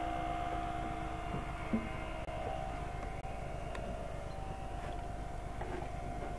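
A steady mechanical hum with a constant mid-pitched whine over a low rumble, and one faint short knock just before two seconds in.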